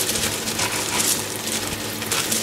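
Water running steadily through an aquaponics grow bed, over a faint steady low hum, with the scrape and crunch of hands moving gravel.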